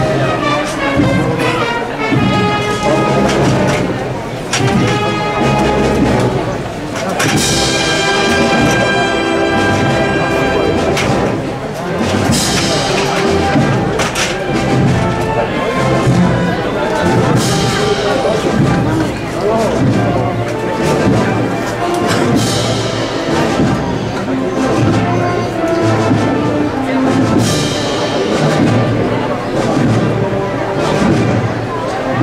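A brass band with drums playing a slow Holy Week processional march: held brass notes over a drum beat.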